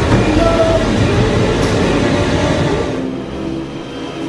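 Loud, steady rumbling noise with hiss that dies down about three seconds in.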